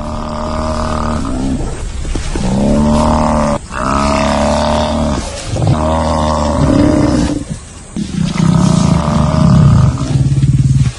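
A run of about five loud, drawn-out, low animal calls, each one to two seconds long with short breaks between, from lions pulling down a Cape buffalo. The calls are lion roars and growls or the buffalo's bellows.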